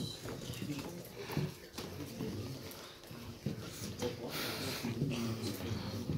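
Indistinct, low voices talking, with a brief rush of hissing noise about four seconds in.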